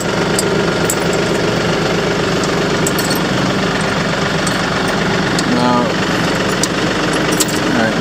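Tractor engine idling steadily, with a few light metal clicks from the hitch links being handled.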